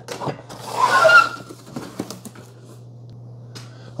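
Large cardboard box being cut open and handled: a loud scraping rasp of cardboard with a slight squeak about half a second in, then light knocks and rustles as the flaps are opened.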